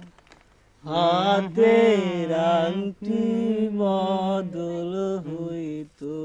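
A man singing unaccompanied in long, held, wavering notes. He comes in about a second in and sings in phrases with short breaks between them.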